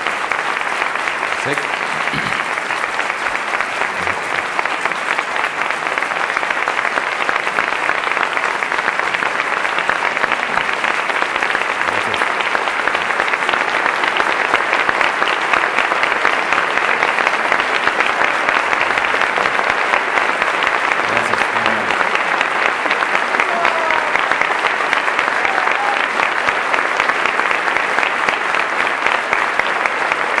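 Large audience applauding steadily, the clapping swelling louder a few seconds in.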